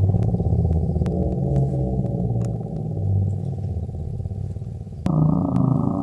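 Low, muffled droning background music, dark and synthesizer-like, with its upper range sharply cut away. It turns a little brighter about five seconds in.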